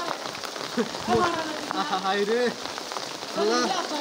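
Steady rain falling, with several voices chanting the same short phrase over and over in short bursts about a second apart.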